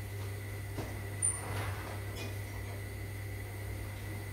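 A few light knocks and clinks of kitchen items being handled on a counter, the loudest about a second and a quarter in, over a steady low hum.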